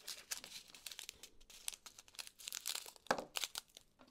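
Small plastic zip-top baggies crinkling and rustling as they are handled: a run of quick crackles, with one louder crackle about three seconds in.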